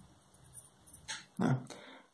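Faint pencil on paper while a curve is drawn, then a brief hissing sound and a short voiced 'mm'-like sound from a man, about one and a half seconds in.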